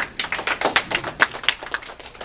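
An audience clapping briefly: many quick, irregular claps that start at once and thin out near the end.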